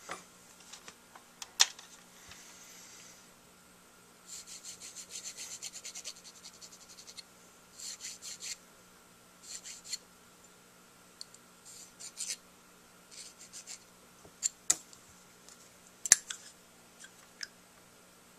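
Small needle file scraping the tip rail of a saxophone mouthpiece in short runs of quick strokes, reshaping the rail from the outside where it is too thin. A few sharp clicks come from handling the file and mouthpiece, the loudest near the end.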